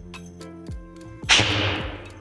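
A homemade air cannon fires its charge of compressed air from a bike pump. Just past halfway there is one sudden rushing blast that fades over about half a second, over background music.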